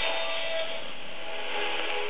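Shortwave AM radio reception on 6025 kHz: quiet music in a steady hiss of static, the audio narrow and muffled.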